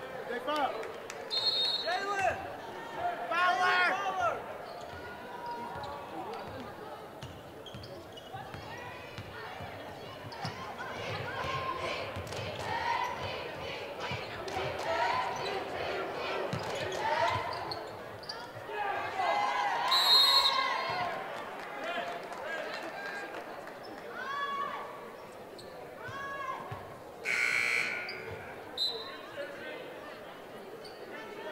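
Live basketball game sound in a gym: the ball bouncing on the hardwood and sneakers squeaking, under shouting from players and crowd. A loud sharp blast comes about twenty seconds in and a longer harsh one near the end.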